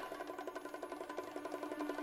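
Quiet background music: a fast, even pulsing pattern over one held low note.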